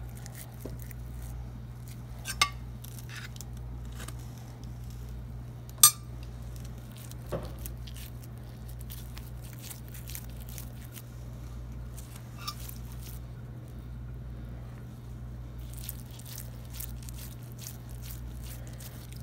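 Soft pats and squishes of wet hands pressing and shaping sticky rice dough around a minced-meat filling for rice kubba, with a few sharp clinks, the loudest about six seconds in. A steady low hum runs underneath.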